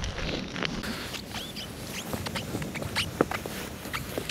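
Boots stepping and hopping on wet ice and crusted snow: irregular small crunches and clicks, with a brief squeak or two.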